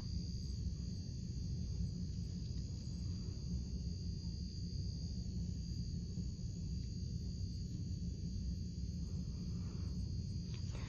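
A steady low hum with a faint, thin, high-pitched whine held throughout, with no distinct events.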